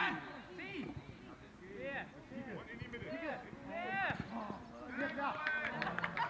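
Several voices shouting and calling out across a football pitch, overlapping calls that rise and fall in pitch, with no clear words.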